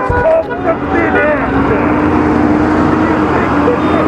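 Vehicle horn held in one long, steady blast of about three seconds amid street traffic noise, starting about a second in, with voices shouting just before it.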